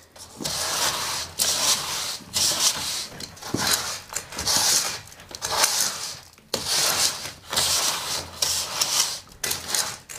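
A straightedge drawn in repeated strokes across fresh cement render on a brick wall, scraping off the excess mortar to level the coat (screeding). It is a gritty scrape, about one stroke a second.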